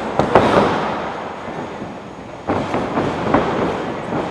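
Strikes between two professional wrestlers landing with sharp slaps, echoing in a gymnasium. There is one near the start, then several in quick succession about two and a half seconds in.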